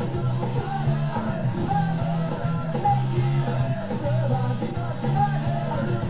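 Rock music with guitar and singing.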